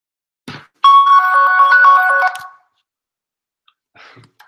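Mobile phone playing a short electronic ringtone melody: several clear notes stepping up and down for about a second and a half, starting about a second in.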